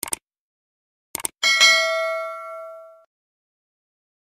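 Subscribe-button animation sound effect: quick clicks at the start and again about a second in, then a single bright bell ding that rings out and fades over about a second and a half.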